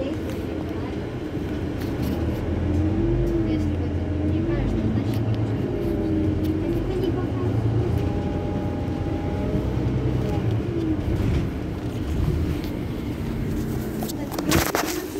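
Iveco Crossway LE Euro 6 city bus standing with its engine idling, a steady low rumble.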